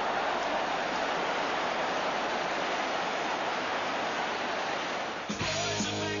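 Football stadium crowd roaring in reaction to a goal, a loud, even wall of noise. It cuts off about five seconds in as guitar-led rock music starts.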